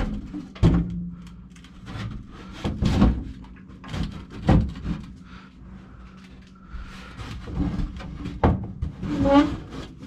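Sheet-metal knocks and scraping as a blower housing fitted with an ECM motor is lined up with its bracket and slid into an air handler cabinet: about five separate thuds spread through, with a low steady hum underneath.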